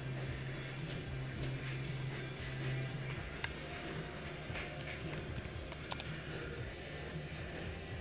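Quiet background music with a steady low note that fades after about 3 seconds, and a few faint clicks of a computer keyboard and mouse being used.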